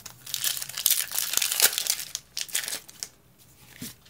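Foil Pokémon booster pack wrapper being torn open and crinkled by hand: a dense crackling that lasts about two and a half seconds, then dies down to a few small rustles.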